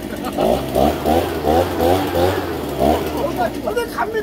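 A backpack leaf blower's small two-stroke engine running steadily, under a person's repeated laughter in quick short bursts.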